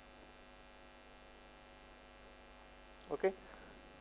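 Faint steady electrical hum with a stack of even overtones, the background hum of the recording setup between words. A short spoken 'ok' comes just after three seconds in.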